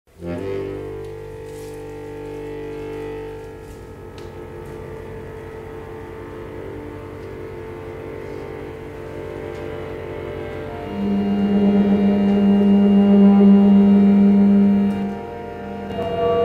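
Chromatic button accordion holding long sustained chords in a piece of contemporary new music, swelling into a louder low held note from about 11 to 15 seconds in, which then drops away.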